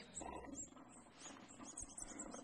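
Several faint, short, high squeaks from the bulldog's squeaky toy.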